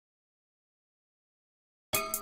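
Digital silence, then just before the end a programmed beat starts playing back: sharp electronic hi-hat strokes over a keyboard melody.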